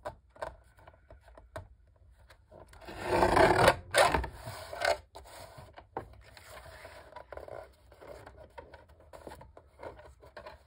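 Deckle-edge paper trimmer's blade carriage drawn down its rail through a photo: a rasping scrape that builds and ends sharply about four seconds in. Smaller rubs and clicks come from the photo being slid and repositioned on the trimmer base.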